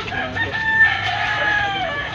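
A rooster crowing once: one long crow lasting about a second and a half.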